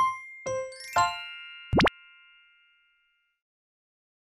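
The closing notes of a bright, keyboard-style intro jingle: three chiming, bell-like notes in the first second, the last one ringing out for about two seconds. A short rising swoop sound effect comes about two seconds in.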